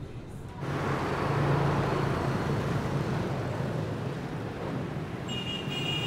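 Motor scooter engine running amid street traffic noise, cutting in suddenly about half a second in; a thin high tone joins near the end.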